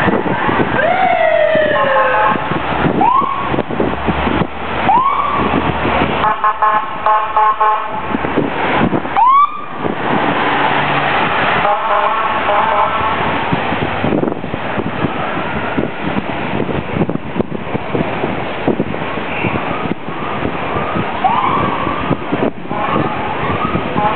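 Street traffic noise around a group of inline skaters. A horn sounds for about two seconds about six seconds in and again briefly around twelve seconds, and short siren-like rising-and-falling pitched calls come now and then.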